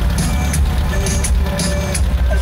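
Loud music with heavy bass and a steady beat, played through an aftermarket car audio system of JC Power speakers and a DB Drive amplifier.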